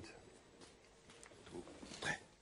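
Near silence: faint room tone in the pause between spoken words and the guitar.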